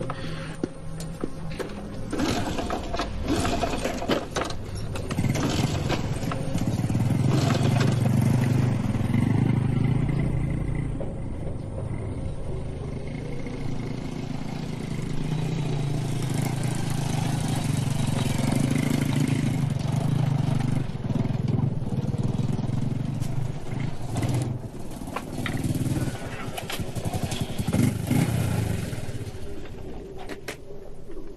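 A small motor scooter's engine running while it is ridden, a steady low drone.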